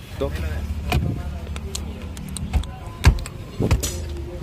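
A plastic dashboard trim frame being handled and pressed into place around a car's head unit, giving several sharp clicks and knocks over a low steady hum.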